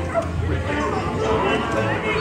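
Animatronic pirates singing and calling out over the ride's music soundtrack, thick with overlapping voices.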